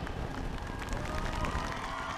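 Field ambience between phrases of a marching band show: scattered steps and rustling of performers moving across the turf, with a faint held tone coming in about a second in.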